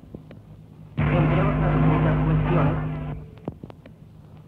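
A replayed tape recording of the voice phenomenon: a two-second block of hiss and steady hum, with a purported voice buried in it, starts about a second in and cuts off suddenly. It is framed by faint clicks, and the same fragment is heard again just before and just after.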